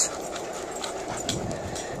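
Skateboard wheels rolling steadily on an asphalt trail, with two dogs panting as they run alongside on leash.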